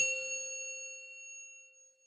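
A single bell-like metallic ding, struck once and ringing out, fading away over about two seconds: an intro logo sound effect.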